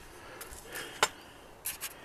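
Small handling noises from antenna kit parts being moved about on a table: light rustling, one sharp click about a second in, and a brief scrape near the end.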